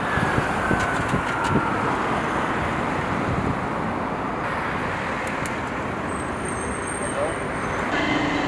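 Street ambience: steady traffic noise from passing road vehicles, with a brief laugh and voices at the very start and a faint tone that slowly falls in pitch over the first few seconds.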